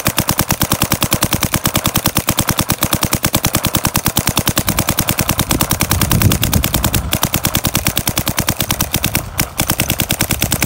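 Empire Vanquish GT electronic paintball marker firing rapid, evenly spaced shots on full rapid fire, each a sharp pop, with a short break near the end.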